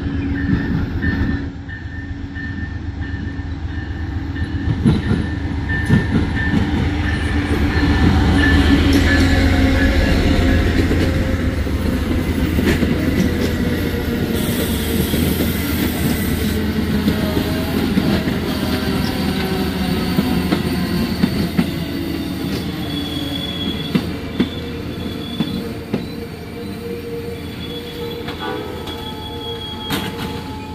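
Amtrak GE Genesis P42DC diesel locomotive and its passenger cars rolling past at low speed, the engine's rumble loudest around ten seconds in, with wheel clicks over the rail joints. In the last several seconds high, steady squeals from the wheels and brakes come in as the train slows for the station.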